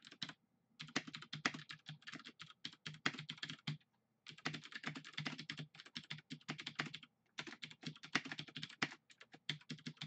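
Typing on a computer keyboard in quick runs of keystrokes, broken by short pauses about half a second in, near four seconds and around seven seconds.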